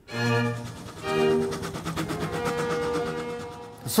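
Orchestral music with bowed strings: two short chords, then a long held note.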